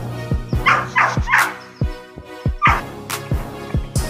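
Background music with a deep bass beat whose hits slide down in pitch, over which a dog barks in short yips about four times, three close together in the first second and a half and one more near the end.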